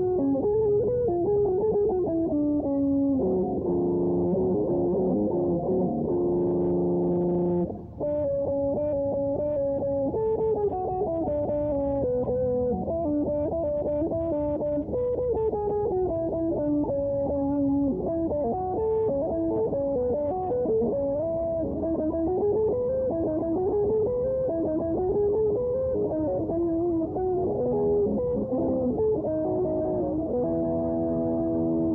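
Electric guitar playing a melodic lead line of quick runs that climb and fall, with a held chord about four to eight seconds in and a brief break just before the eighth second.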